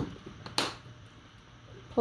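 A sharp click, then a brief shaking hiss about half a second in: a shaker container of grated parmesan cheese being shaken over a tray of roasted kohlrabi.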